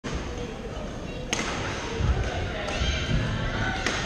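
Badminton rackets striking shuttlecocks on the courts of a large hall: a sharp crack about a second in and another near the end. Between them are dull thuds of footfalls on the court floor, under echoing voices.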